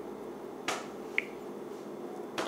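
Fingertip taps on a smartphone touchscreen while answering setup prompts: a sharp click a little after half a second in, then a short high tick about half a second later.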